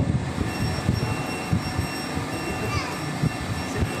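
Steady rumbling background noise with a faint high-pitched whine. A short tone falls in pitch about three quarters of the way through.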